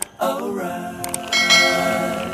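A sung phrase in the background music, then a couple of quick clicks and a bright bell-like chime about a second and a half in that rings on and fades slowly: the sound effect of a subscribe-button animation.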